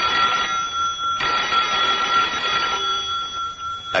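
Telephone bell ringing in a steady trill, with a brief break about a second in and stopping just before the end.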